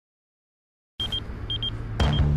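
Silence for about a second, then a low rumble comes in with a handheld electronic device beeping: pairs of short, high beeps on one pitch, repeating about every half second as an alert.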